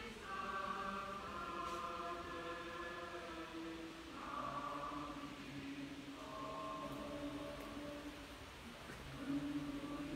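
Choir singing Orthodox liturgical chant in slow, long held notes.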